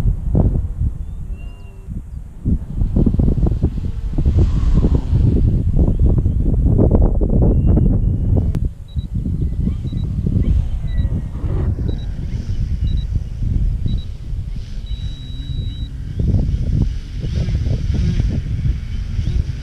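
Gusty wind buffeting the microphone. About halfway through, a series of short, high electronic beeps come about once a second and end in one longer beep.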